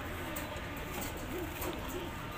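Domestic pigeons cooing softly, a few low wavering coos.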